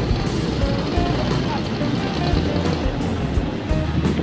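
Music playing over street traffic noise, with motorcycle tricycles and motorbikes passing on the road.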